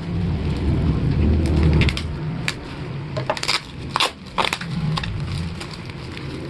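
Plastic bubble wrap being cut with a kitchen knife and then handled and pulled apart: a dense rustling and scraping at first, then a run of sharp plastic crackles about halfway through.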